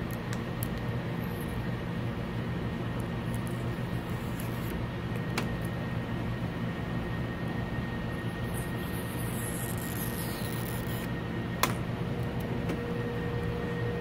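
Steady low electrical or mechanical hum of room noise. Two sharp clicks come about five and twelve seconds in.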